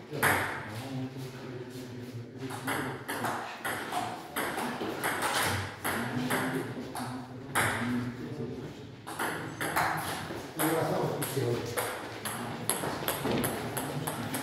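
Table tennis ball clicking off paddles and the table in quick rallies, with repeated sharp clicks several times a second.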